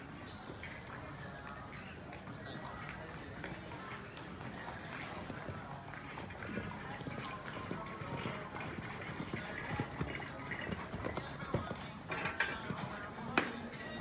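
Hoofbeats of a show-jumping horse cantering on a sand arena, under background voices and music. A single sharp knock comes near the end.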